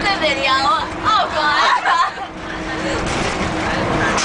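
Excited, wordless voices of teenage girls over the steady hum of a moving school bus. After about two seconds the voices stop and a steady rushing noise fills the rest.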